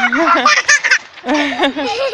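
Young children's excited voices: short shouts and squeals without clear words, coming in several bursts.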